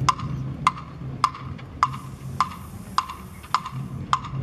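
Sharp, woody percussion clicks at an even pace, about one every 0.6 seconds (roughly 100 a minute), beating marching time for the band.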